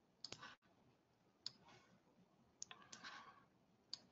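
Faint computer mouse clicks in near silence: a handful of sharp clicks, some in quick pairs like double-clicks, each followed by a brief soft rustle.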